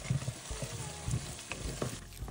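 Onion, garlic, chili and tomato paste sizzling in oil in a stainless steel pot, stirred with a wooden spatula that scrapes and taps a few times.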